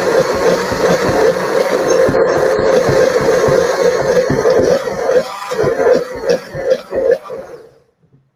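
Countertop blender running loudly on corn, breaking down leftover chunks of kernel. It turns choppy in its last few seconds and winds down to a stop just before the end.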